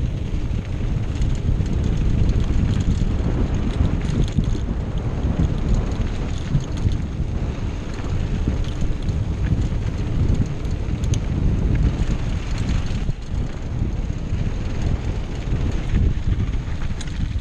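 Wind buffeting a GoPro's microphone as a Diamondback Hook mountain bike rolls along a dirt trail. Tyre noise on the dirt runs under it, with scattered light clicks and rattles from the bike over the rough ground.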